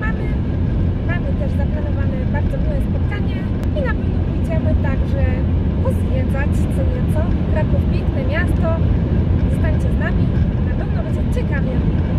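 Steady low road and engine rumble heard inside the cabin of a car driving at speed.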